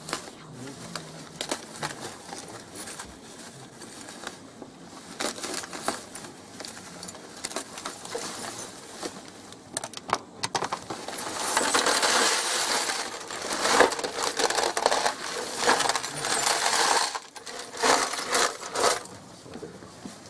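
A plastic bag rustling as it is cut open, then a large heap of small metal pieces emptied out of it into an aluminium case. From about eleven seconds in there is a dense, loud rattling and clinking of metal on metal, which comes in bursts until near the end.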